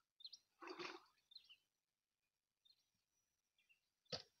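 Near silence outdoors, with a few faint short bird chirps and a brief scuffing noise about a second in.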